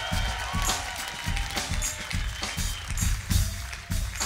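Live funk band vamping a groove: drums and bass on a steady beat, with held higher notes and cymbal hits above.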